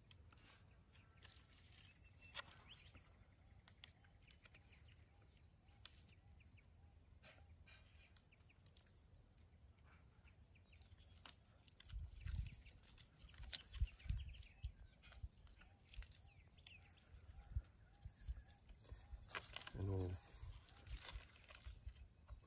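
Faint handling sounds of string being tied around the branches of a young macadamia tree. Quiet at first, then from about halfway irregular light clicks, low knocks and leaf rustles as the knot is worked.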